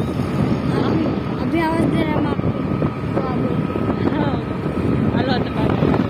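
Wind buffeting the microphone of a phone carried on a moving scooter, over the steady noise of the scooter and the road. A voice is heard briefly now and then.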